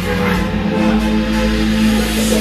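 Loud drum and bass music mixed by a DJ on club decks, with a long held bass note.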